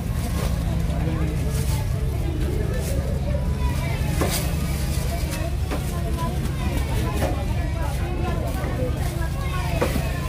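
A cleaver knocking on a thick wooden chopping block as fresh tuna is cut: a few sharp knocks a second or more apart, the first about four seconds in. Under them a steady low rumble runs on, with people talking.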